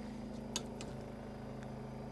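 Steady low motor hum with one constant pitch, and a few faint ticks about half a second and one and a half seconds in.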